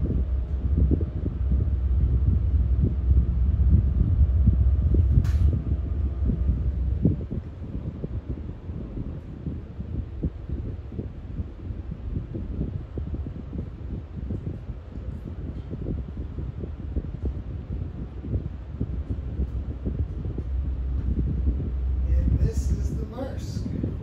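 A tugboat's diesel engines heard inside the wheelhouse as a steady low rumble. The rumble eases down about seven seconds in, as the throttle is pulled back. There is a single short click about five seconds in.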